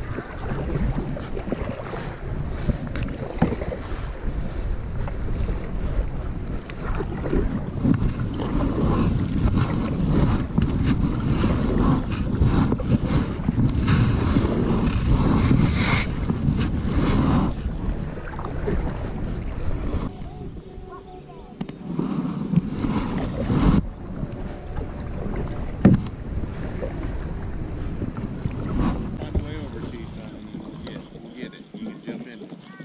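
A kayak being paddled, with strokes and drips of the double-bladed paddle over a heavy, gusting rumble of wind on the camera's microphone. The sound eases briefly about two-thirds of the way through.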